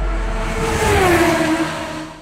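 A car passing by: a rushing engine and tyre noise whose pitch falls as it goes past. It swells to its loudest about a second in, then fades away.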